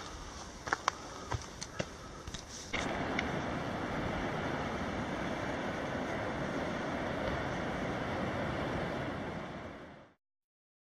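Scattered clicks and crunches of footsteps on a forest trail over a low hiss. About three seconds in, the sound switches abruptly to a steady outdoor rushing noise that fades out near the end.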